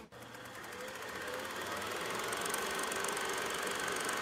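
Steady low hum with hiss, fading in over about the first second and then holding level.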